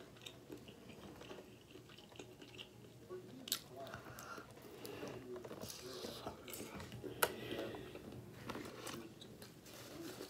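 A person eating close to the microphone, biting and chewing pieces of a shrimp boil, with a few sharp wet clicks, the loudest about seven seconds in.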